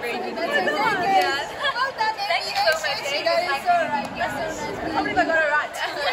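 Speech only: young women chatting.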